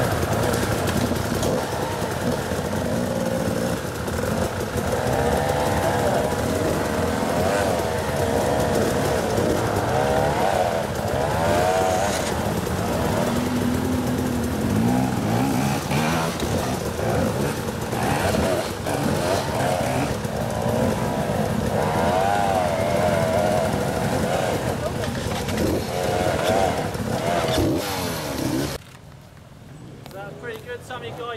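Two-stroke enduro dirt bike climbing a steep rocky hill, its engine revving up and down again and again as the rider works the throttle for grip. The sound stops abruptly near the end.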